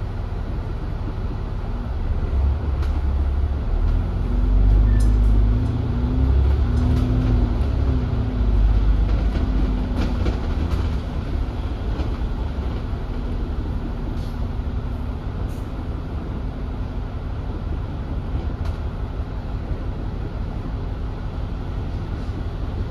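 An Alexander Dennis Enviro400 double-decker bus (E40D chassis, Cummins six-cylinder diesel), heard from on board, pulling away from a standstill. The engine's drone builds from about two seconds in and is loudest between about four and nine seconds, then settles to a steady running noise. A few sharp clicks and rattles come through along the way.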